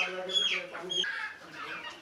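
Chickens clucking and calling: several short, pitched calls close together in the first second, then fainter, scattered calls.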